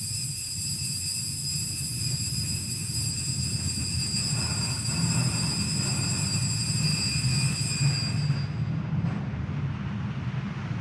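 Altar bells rung continuously at the elevation of the chalice after the consecration: a steady high ringing that stops about eight and a half seconds in, over a low rumble.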